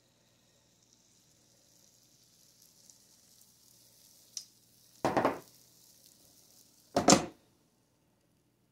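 Waffle batter sizzling with a faint hiss as it is poured onto the hot plates of a waffle maker, followed by two loud clunks about two seconds apart as the waffle maker is closed and handled.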